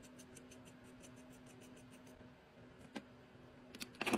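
Near silence with faint, rapid, evenly spaced ticking and a single light click about three seconds in, over a low steady hum.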